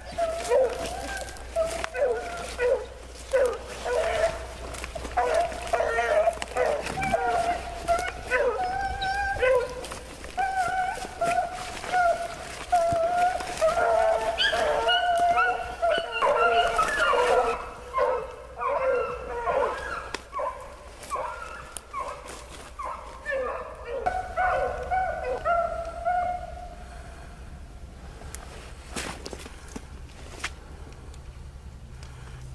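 A pack of rabbit hounds baying in full cry while running a rabbit, with long drawn-out calls overlapping one another. The calls thin out and die away near the end.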